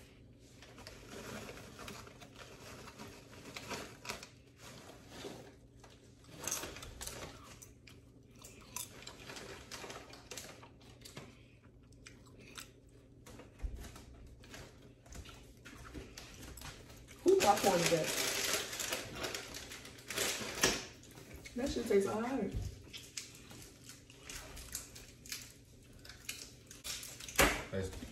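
Crinkling of a plastic potato-chip bag and crunching of chips being eaten, in short scattered crackles. About two-thirds of the way through there is a louder stretch with a voice in it.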